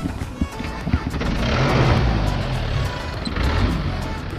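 Background music over road noise from riding a bicycle along a town road. A louder rush of traffic noise swells about a second in and eases off near the end.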